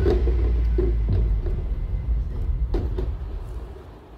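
A steady low rumble with a few light knocks, like handling noise on a phone recording. It fades near the end.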